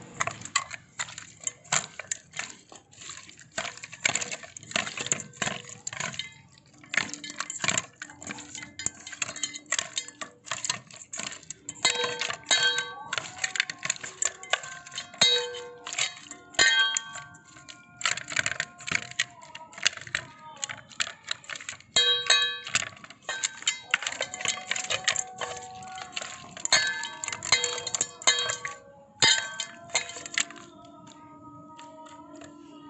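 Stainless steel mixing bowl knocking, clinking and ringing over and over as a hand works raw quail pieces and spice masala around inside it. The bowl rings on after many of the strikes, more so in the second half.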